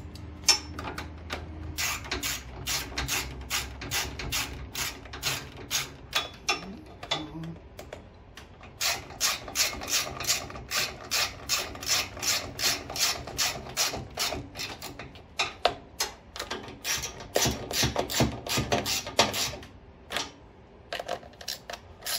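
Hand ratchet clicking in long, even runs of about three clicks a second, broken by short pauses about six seconds in and near the end, as nuts are snugged down on the generator's air-cleaner mounting studs.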